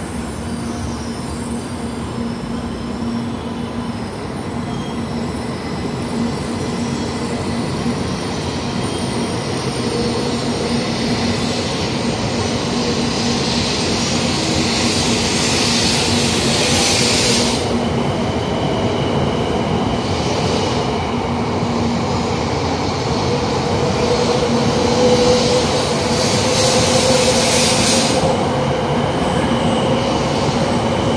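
700 series Shinkansen train pulling out of the station: a steady hum with a whine that climbs in pitch through the second half as it gathers speed, growing slowly louder, with two stretches of hissing along the way.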